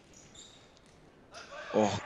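Faint sounds of futsal play on a wooden indoor court: a few light ball strikes and shoe noises. A man exclaims "oh" near the end.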